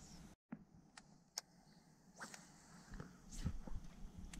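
Faint handling noise: a few scattered light clicks and knocks, the loudest about three and a half seconds in, after a brief cut to silence near the start.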